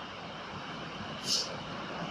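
Steady background room noise with one short, high hiss just over a second in.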